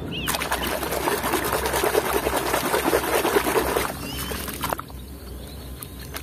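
Splashing and sloshing of muddy water as a small plastic toy truck is swished through it and washed by hand. The splashing runs hard for about four and a half seconds, then drops to a few lighter splashes.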